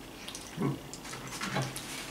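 A person eating, giving two short low hums about a second apart, with faint mouth clicks of chewing between them.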